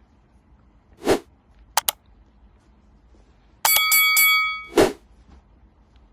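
A sharp crack, then two quick clicks, then a clatter of clicks with a metallic ringing that lasts about a second and fades, ending in another sharp crack.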